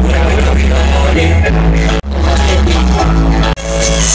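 Loud music with a heavy, steady bass line, played through a DJ's PA system. The sound drops out sharply for an instant twice, about two seconds in and near the end.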